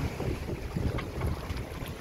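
Wind buffeting the microphone aboard a sailing yacht under way, an uneven, gusty rumble.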